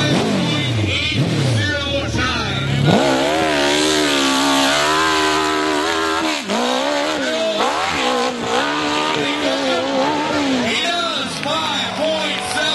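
Dirt bike engines at full throttle on a steep dirt hill climb. In the first few seconds one engine's note falls away. Then another bike's engine revs hard, its pitch rising and dipping with throttle and gear changes.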